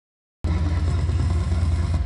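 Heavy dubstep sub-bass drone from a concert PA, a deep steady rumble that starts abruptly about half a second in.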